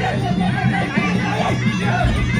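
Live Kun Khmer fight music: a sralai (Khmer reed oboe) playing a wavering, sliding melody over steady drums, with crowd chatter underneath.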